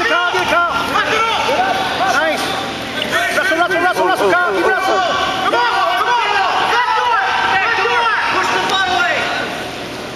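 Several voices shouting at once, overlapping and rising and falling in pitch: coaches and spectators yelling instructions at wrestlers during a match.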